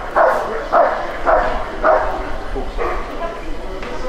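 A German shepherd barking in short, evenly spaced barks, about two a second, while guarding a sleeve-wearing helper in a bark-and-hold. The barking stops about three seconds in.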